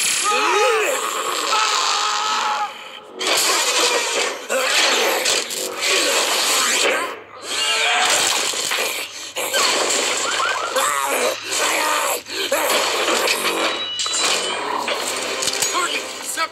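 Action-film soundtrack: a woman yelling at the start, then a dense, loud run of crashing and breaking sound effects with short shrill cries among them and brief lulls.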